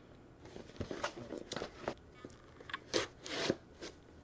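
Hands handling and turning over a cardboard mailer box: scattered rustles, scrapes and light knocks of skin and card against the box.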